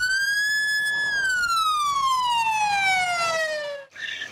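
Fire engine siren wailing: the pitch climbs quickly, holds high for about half a second, then slides slowly down through the rest of the wail and cuts off abruptly near the end.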